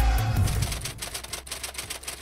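A music cue ends on a fading note, then fast, even mechanical clicking like typewriter keys starts, a sound effect under the newspaper-headline graphic.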